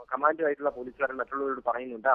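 Only speech: a man talking in Malayalam over a telephone line, with the narrow, tinny sound of a phone call.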